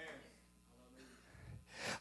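A pause that is nearly silent, with a faint low room hum, then a man's quick, audible intake of breath near the end, just before he speaks again.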